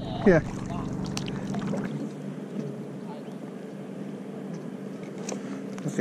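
Motorboat engine idling, a steady low hum over faint water noise.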